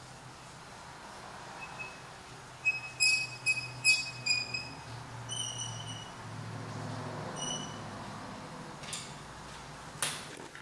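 Broken head stud squeaking in its threads as an easy-out extractor turns it out of an LS3 engine block: a run of short, high metallic squeaks, loudest about three to four seconds in. A faint steady hum lies underneath.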